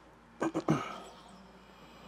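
A man's short cough or throat-clearing, two quick bursts about half a second in.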